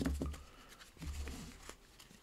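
Cardboard trading cards being handled and set down on a table: a light tap right at the start, another just after and one near the end, with faint sliding in between over a low hum.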